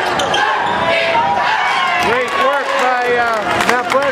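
Basketball shoes squeaking on a hardwood gym floor, many short squeaks, thickest in the second half, with a ball being dribbled.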